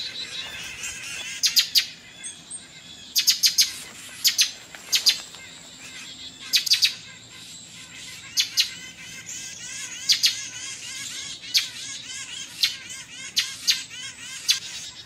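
A mixed flock of songbirds (chickadees, wrens, titmice, woodpeckers and blue jays) scolding together in a tree: a busy chorus of short, sharp, harsh calls repeated every second or so, with quicker chattering notes between them.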